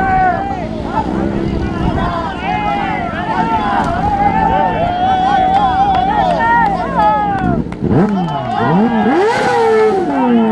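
A crowd of people shouting and calling out together while heaving a crashed buggy, one voice holding a long call. From about three-quarters of the way in, a racing engine revs up and down several times.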